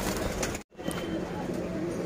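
Domestic pigeons cooing, low and wavering, in a cage. The sound drops out completely for a moment just over half a second in.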